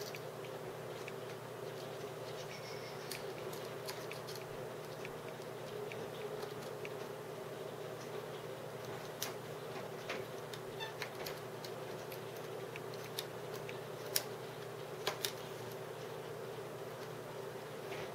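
Faint scattered clicks and taps of a screwdriver and small metal parts being worked on a plastic RC truck chassis as screws are driven in, with a few sharper clicks in the latter half. A steady low hum runs underneath.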